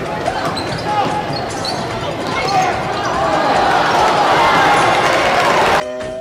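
Live college basketball game sound: sneakers squeaking on the hardwood court and a ball bouncing under arena crowd noise. The crowd swells louder through the second half as the back-door dunk is made. The game sound cuts off abruptly just before the end into electronic music.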